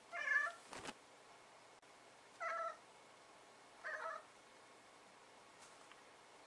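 A domestic cat giving three short meows, spaced about a second and a half apart, at an insect it has spotted on the window screen. A sharp click comes just after the first meow.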